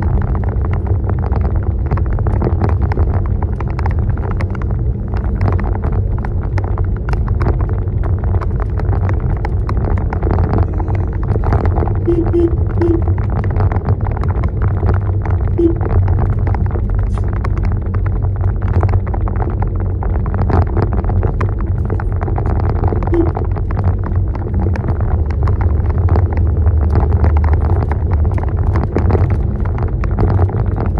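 Inside the cabin of a car driving on a rough concrete road: steady low engine and road rumble with many small knocks and rattles.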